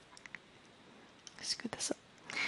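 Near silence with a couple of faint clicks, then soft, breathy speech, a single whispered word, in the last half second.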